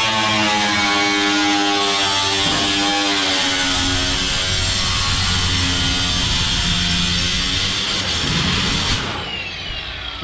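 Cordless angle grinder cutting through galvanized sheet-metal ductwork: a loud, steady grinding hiss over the motor's whine. It stops about nine seconds in, and the motor winds down.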